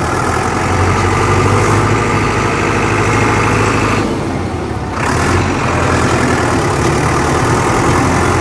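Agri King T70 4WD tractor's diesel engine running steadily while the tractor is driven, heard from the driver's seat. It eases off briefly about four seconds in, then picks up again.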